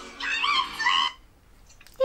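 A dog whining: two short, high, wavering whines in the first second.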